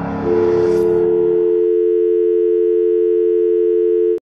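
A steady electronic signal of two tones sounding together, like a telephone dial tone, starts a quarter second in and holds at an unchanging pitch. The fading end of background music lies under it for the first second and a half.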